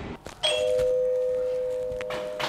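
Doorbell chime: a steady two-note tone that starts about half a second in and slowly fades.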